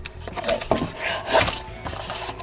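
Foam windscreen rubbing and scraping as it is worked over the metal mesh grille of a handheld karaoke microphone, in a few irregular rustles, the loudest about a second and a half in. Faint background music underneath.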